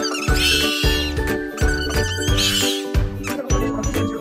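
Background music with a steady deep beat under sustained tones, with high squeaky chirps twice, about half a second in and again past the middle.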